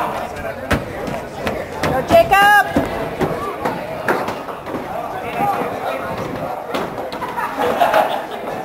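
Voices of players and sideline spectators calling out during a lacrosse game, with one loud drawn-out yell about two and a half seconds in. A few sharp knocks are scattered through it.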